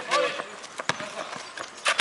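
Basketball bouncing on an asphalt court, a few sharp slaps with the loudest near the end, mixed with footsteps.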